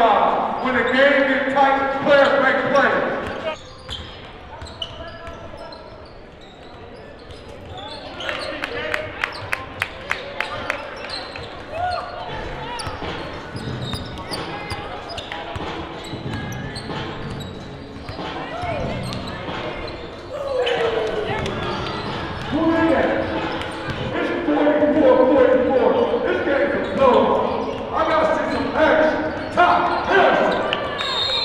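Basketball game sound in a large, echoing gym: spectators' and players' voices, with a basketball being dribbled. About nine seconds in comes a run of about seven quick bounces, roughly three a second.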